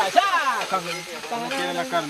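Diced taco meat sizzling on a flat steel griddle while a metal spatula and knife scrape and turn it on the hot plate.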